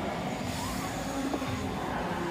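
A BMX bike's tyres rolling over a concrete skatepark, a steady rolling noise with open arena ambience behind it.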